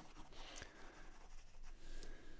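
Pencil sketching on paper: faint, scratchy shading strokes.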